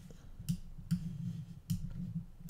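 A few faint computer mouse clicks, about three, spaced irregularly half a second to a second apart, as guide lines are drawn on screen.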